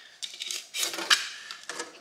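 A snap-off utility knife blade cutting through polystyrene trim: a run of short, irregular scratchy strokes as the blade is drawn along the mitre.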